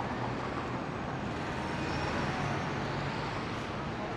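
City street ambience: a steady wash of traffic noise from passing vehicles.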